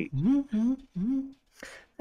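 A man humming three short notes of a tune in quick succession, followed by a faint breath.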